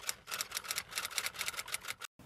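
Typewriter key-click sound effect: a rapid run of short clicks, about ten a second, stopping just before speech resumes.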